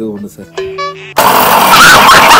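Electric kitchen mixer grinder with a stainless-steel jar running, starting abruptly just over a second in, loud and steady for about a second and a half. Before it, a man's voice and a few tones.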